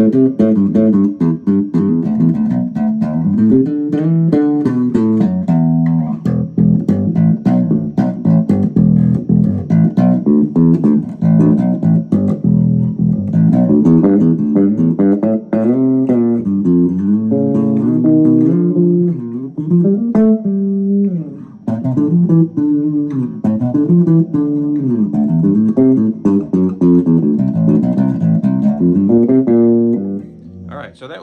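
Squier Vintage Modified Jaguar Bass Special SS short-scale electric bass played through a small guitar amp: a continuous run of plucked bass licks, the notes walking up and down, with a brief lull about twenty seconds in.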